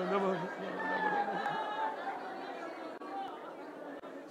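A man's voice holding a long sung note that ends about half a second in, followed by quieter, overlapping voices in a large hall.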